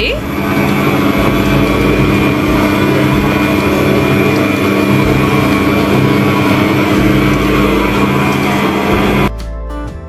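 AGARO Royal 1000 W stand mixer's motor running at a steady pitch as its dough hook kneads flour into chapati dough. The sound cuts off a little past nine seconds in and guitar music takes over.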